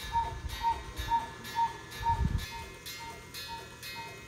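Wall clock chiming, one ringing note struck about twice a second, about nine times and growing fainter; the clock is set to the wrong time. A low thump comes about two seconds in.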